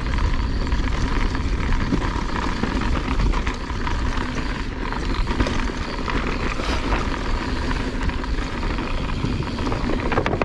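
Mountain bike rolling fast down a dirt singletrack: wind buffeting the camera's microphone, with tyres crunching over dirt and gravel and the bike rattling over bumps.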